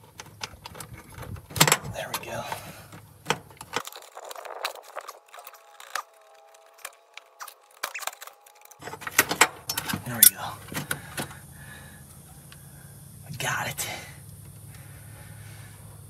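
Irregular small clicks, taps and light metallic rattles as wiring connectors are worked off the back of an old VW Beetle speedometer and the gauge is eased out of the steel dashboard.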